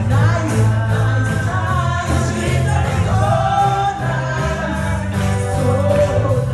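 Gospel praise and worship song performed live: women singing into microphones over a backing of sustained bass notes and a steady beat.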